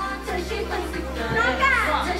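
Live pop song: a female singer's voice through a handheld microphone over an electronic backing track with a steady bass. Her voice slides up and back down near the end.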